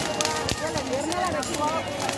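A street crowd's many voices talking and calling out at once, overlapping, with scattered sharp clicks and crackles throughout.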